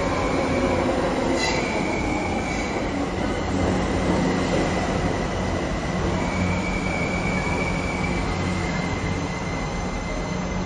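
New York City subway F train running along the platform as it pulls into the station and slows, a steady rumble of wheels on rails. A thin, high-pitched wheel squeal comes in about a second and a half in and again around the middle.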